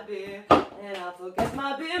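A woman singing a folk song while keeping the cup-song rhythm with a clear plastic cup: hand claps and the cup knocked on a tabletop, with sharp hits about half a second and a second and a half in.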